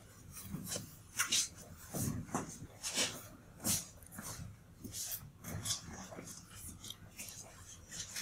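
Quiet, indistinct talking and rustling in a room, in irregular short bursts with hissy s-sounds, too faint for any words to be made out.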